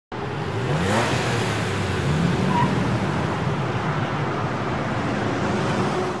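A car engine revving up, its pitch rising in the first second, then running on steadily with a loud rushing noise.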